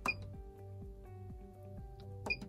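A Puloon ATM's side function key pressed once right at the start, giving a click and a short high beep. Quiet background music runs underneath.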